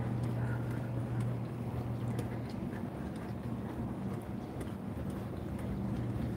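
Footsteps on a concrete sidewalk, faint and irregular, over a steady low hum.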